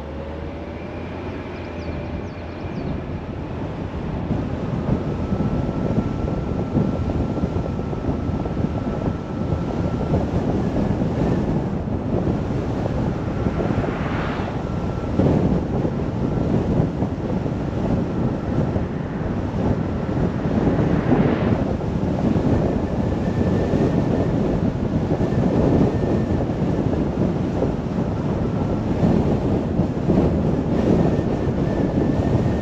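Car driving along a road: wind rush on the microphone and road noise, building over the first few seconds as the car gathers speed from a stop, then steady with a couple of brief swells.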